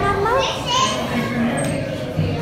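Children's voices chattering and calling out, several overlapping, with no clear words.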